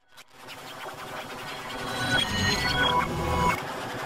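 Samsung logo jingle heavily distorted by stacked audio effects: a harsh, noisy swell that starts abruptly and grows louder, with quick stepped electronic tones near the middle, then drops back in level shortly before the end.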